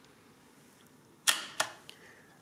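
A single sharp click a little past halfway, followed by two fainter clicks, against quiet room tone.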